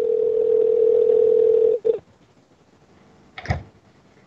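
A telephone line tone: one steady, single-pitched tone held for about two seconds, then cut off. A short click-like noise follows about three and a half seconds in.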